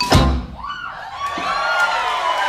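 A live band's closing hit with a heavy low thump, ringing out briefly, then the audience starts cheering and whooping about half a second later.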